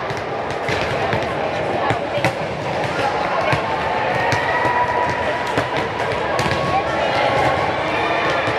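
Volleyballs being hit and bouncing on a hardwood court, in repeated sharp smacks, over the echoing hubbub of many voices in a large sports hall.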